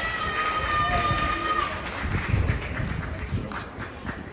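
Stadium ambience: a held musical note from the public-address system that stops a little under halfway through, over indistinct voices and wind buffeting the microphone.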